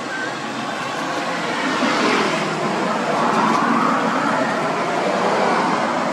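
Traffic noise from a passing vehicle: an even rushing sound that swells about two seconds in and holds, with faint bird chirps over it.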